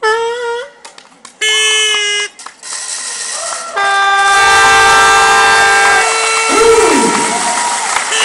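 Train horn sound effect played over a hall's loudspeakers as part of a dance routine's music: two short toots, then a long, steady multi-note horn blast from about four seconds in, over a rumbling, hissing train noise.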